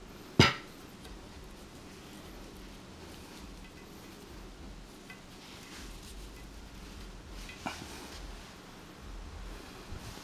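Quiet handling of braided cords being knotted around a metal baton shaft, with one sharp clink about half a second in and two fainter clicks later.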